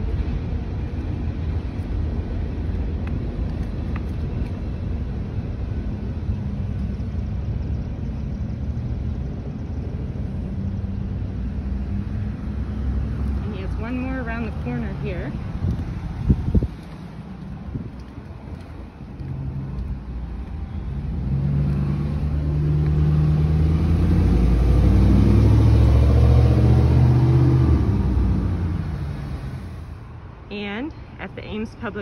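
A passing train rumbles steadily and loud for the first half, then stops abruptly. After a few quieter seconds a road vehicle's engine swells up and fades away near the end.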